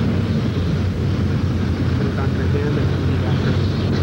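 Steady low hum with a few faint, brief murmurs.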